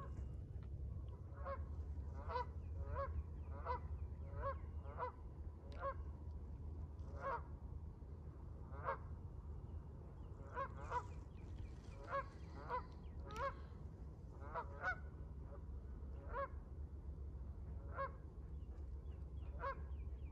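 Canada geese honking: about twenty short single honks, irregularly spaced, some in quick pairs, over a steady low rumble.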